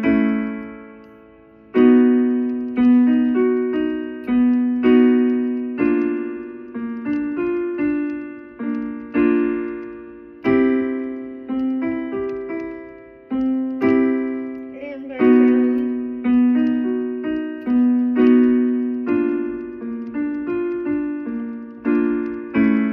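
Piano-sound keyboard playing a vocal warm-up pattern: short stepwise groups of struck notes, two to three a second, each left to decay. A new group starts every few seconds with a louder first note.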